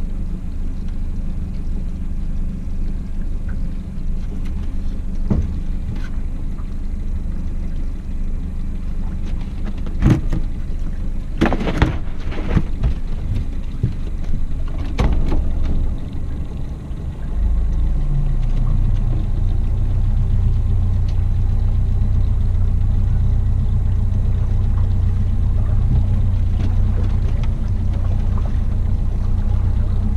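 Boat outboard motor idling, a steady low rumble that grows louder and deeper about two-thirds of the way through. A few sharp knocks and rattles come in the middle, from handling gear in the aluminum boat.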